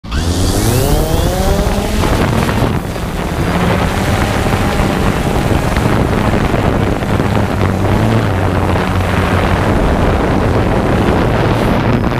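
DJI quadcopter's motors spinning up with a rising whine over the first two seconds, then a steady rotor buzz as it lifts off and climbs.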